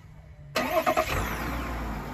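2021 GMC Sierra's 3.0-litre Duramax inline-six turbodiesel starting by factory remote start: the engine fires suddenly about half a second in and settles into a low, steady idle.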